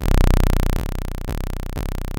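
DIY analog modular synthesizer built from Yusynth modules (VCO, VCF, ADSR) playing low bass notes from its keyboard: a loud note at the start, then three more notes about half a second apart.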